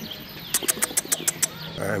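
A quick, even run of about seven sharp clicks within a second, then a man's voice begins near the end.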